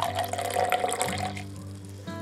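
Liquid poured from a bottle into a glass tumbler, splashing and filling for about a second and a half before the pour stops, over background music.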